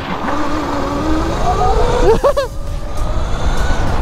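72-volt electric go-kart motor (Sur Ron drive) whining, rising steadily in pitch as the kart accelerates, over a constant low rumble.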